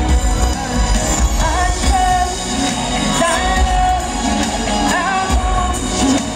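Live R&B song: a female lead vocalist sings long, bending melodic lines over the band's heavy bass, amplified through a concert sound system.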